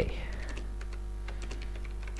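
Computer keyboard typing: a run of light key clicks as a line of code is entered, over a low steady electrical hum.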